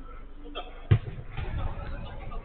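A football kicked hard: one sharp thud about a second in, with players' voices calling around it.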